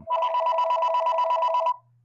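Electronic incoming-call ring tone: a two-tone warble pulsing about ten times a second, loud, cutting off after about a second and a half. It signals an incoming caller that goes unanswered.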